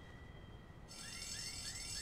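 Faint series of short, rising electronic chirps, about three a second, from a TV drama's soundtrack. They start about halfway through, over a steady high hum.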